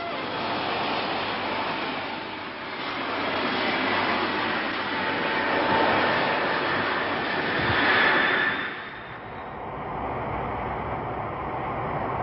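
Boeing 747 jet engines (Pratt & Whitney JT9D turbofans) at takeoff power: a rushing roar that swells to its loudest about eight seconds in, then drops to a duller, steadier drone.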